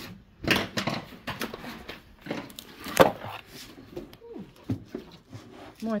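Vinyl LP jackets and cardboard boxes being handled: scattered knocks, taps and rustles, the sharpest a knock about three seconds in, with faint voices in the background.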